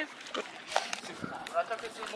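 Background chatter of people's voices at moderate level, with a few short clicks.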